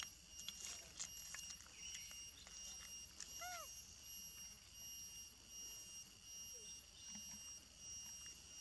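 Faint outdoor ambience with a steady high-pitched whine and scattered light clicks. One short rising-and-falling animal call comes about three and a half seconds in.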